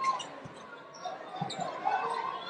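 Basketball being dribbled on a hardwood court in an arena, with sharp knocks of the ball near the start and about a second and a half in, over the arena's crowd noise.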